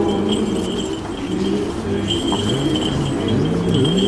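A crowd singing an Orthodox Easter chant together, low men's voices holding long notes and sliding slowly between them over the general noise of the crowd.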